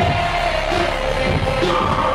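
Loud hip-hop music played through a concert hall's PA, with a heavy, regular bass beat and the crowd's voices mixed in.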